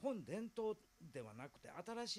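Speech only: a man talking, his voice rising and falling in pitch.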